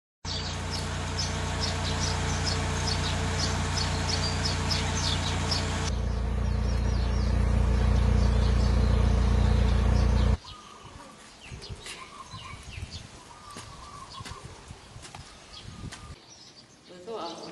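Small birds chirping repeatedly outdoors over a loud, low, steady rumble, which grows louder about six seconds in and cuts off abruptly about ten seconds in. The birds go on chirping over quiet background after that.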